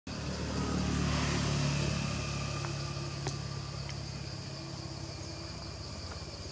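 A motor vehicle engine running nearby, loudest in the first two seconds and then easing off as if passing, over a steady high buzz of insects. A few faint sharp clicks come in the middle.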